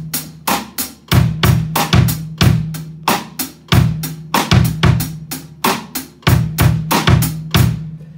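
Drum kit played in a steady groove: kick drum, snare rim shots and light, tight hi-hat eighth notes, the pattern repeating about every two and a half seconds.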